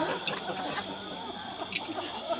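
Wire harmonica neck holder being fitted and adjusted, giving a few light metallic clicks, the sharpest near the end, over a faint murmur of audience voices.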